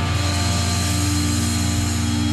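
Heavy metal song: distorted electric guitars and bass hold a single chord, letting it ring steadily at full volume.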